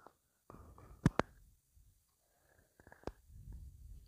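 Mostly quiet, with a couple of short sharp clicks, one about a second in and one about three seconds in, and a faint low rumble near the end.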